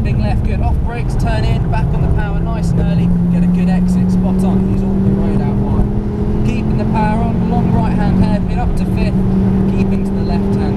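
Ford Focus RS's turbocharged five-cylinder engine pulling hard under full throttle in fifth gear, heard inside the cabin, its note climbing slowly as the car gathers speed down the straight after a brief dip about a second in.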